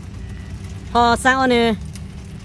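A person speaking for about a second in the middle, over a steady low rumble.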